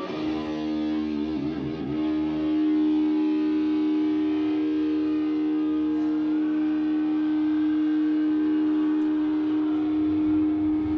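Distorted electric guitar through an amplifier, holding one sustained note that rings steadily for the whole stretch, with a brief wavering in the first two seconds.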